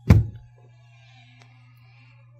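A single dull thump right at the start, dying away within half a second, followed by only a faint steady low hum.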